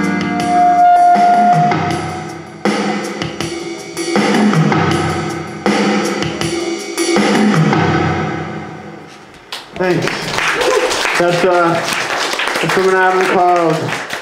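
Live electronic keyboard music with drum sounds and sustained chords that change every second or so, dying away about nine seconds in. A man then talks over the microphone.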